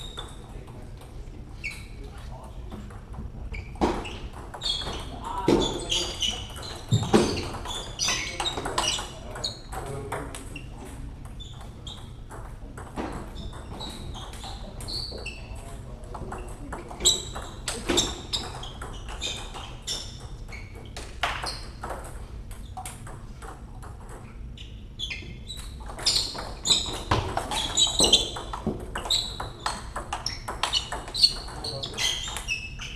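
Scattered sharp clicks of celluloid-type table tennis balls striking bats and tables, with people's voices in between.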